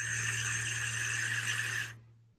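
A long draw on a vape, air hissing through the atomizer's airflow while the coil fires, with a low steady hum underneath; it stops near the end.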